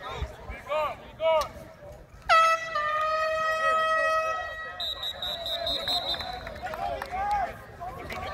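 A single air horn blast about two seconds in, one steady held note lasting roughly two seconds, with shouting voices around it.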